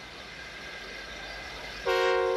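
Faint hiss, then near the end a steam-engine whistle starts, a steady chord of several tones held without changing pitch.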